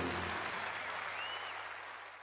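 Audience applause at the end of a live rock and roll recording, fading out steadily, with the song's last low held note stopping in the first half second. A brief high whistle comes about a second in.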